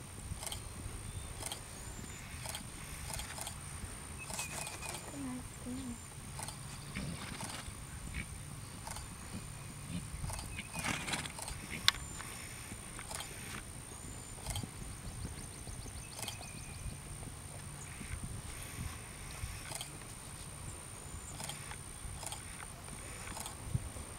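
A ridden horse moving over grass: soft, irregular hoofbeats, with small birds chirping and a faint steady high whine. One sharp click stands out about halfway through.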